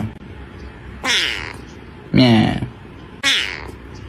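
A kitten meowing three times, short calls about a second apart.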